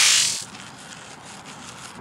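A long hissing spray of liquid blown forcefully out through the lips, cutting off about half a second in, followed by faint outdoor background.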